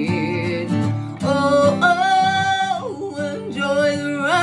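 Woman singing a long held note over her own acoustic guitar accompaniment. The note drops away at about three seconds, and a new vocal phrase starts near the end.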